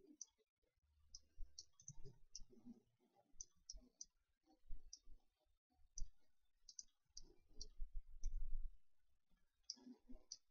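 Computer mouse buttons clicking faintly and irregularly, a couple of dozen sharp clicks, with low dull rumbles of the hand and mouse on the desk between them.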